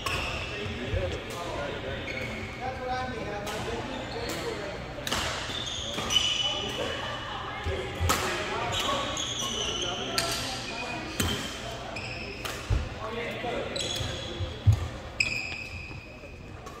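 Badminton play in a large hall: sharp racket hits on the shuttlecock, court shoes squeaking on the wooden floor, and players' voices in the background.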